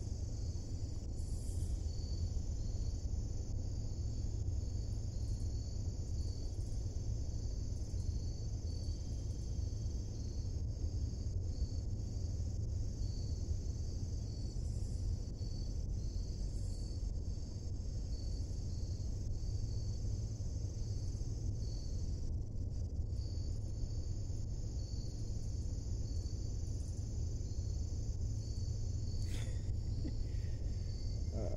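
Steady chorus of crickets, a high continuous buzz with a regular pulsing chirp through it, over a low steady rumble.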